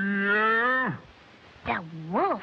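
A long, low, held tone on the cartoon soundtrack that rises slightly and then slides down and stops just under a second in. A short falling swoop and a quick rise-and-fall tone follow near the end, matching the strain of tugging out a coiled wire.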